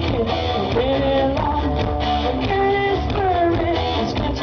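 Live rock band playing loudly, electric guitars over drums, recorded from the audience at an open-air concert.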